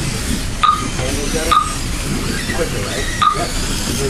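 Short electronic beeps from the race's lap-counting timer as Mini-Z cars cross the timing line, four at uneven spacing, over a steady hiss from the cars running on the track. Voices and laughter are mixed in.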